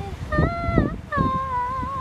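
A woman singing unaccompanied: two held notes with a slight vibrato, the second higher and carried on to the end, with a low rumble of wind on the microphone underneath.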